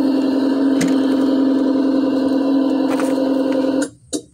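Simulated engine-running sound from the built-in speaker of a 1:16-scale Diecast Masters Freightliner Cascadia RC tractor, a steady electronic drone, with a couple of light knocks as the model is handled. It cuts off suddenly just before the end.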